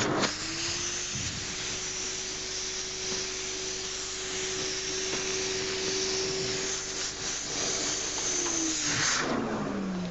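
A vacuum cleaner starts up and runs steadily with its hose on the valve of a vacuum storage bag, sucking the air out of the bag and the pillow packed inside. Near the end it is switched off and its whine falls away.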